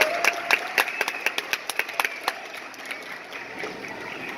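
Audience applause: many sharp individual claps, densest in the first two seconds, then thinning out.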